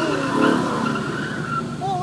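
Ford Mustang 5.0's V8 engine running hard and its tires skidding on wet pavement as the car spins a donut, heard from inside another car.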